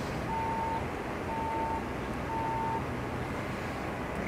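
A vehicle's reversing alarm beeping three times, about once a second, each beep a steady tone of about half a second, over a constant street-traffic hum.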